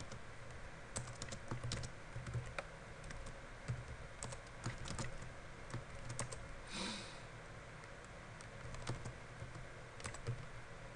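Computer keyboard typing: irregular runs of keystroke clicks with short pauses between them, and a brief hiss about seven seconds in.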